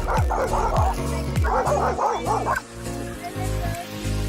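Small dogs barking in a rapid run of excited yips that stops about two and a half seconds in, over background music.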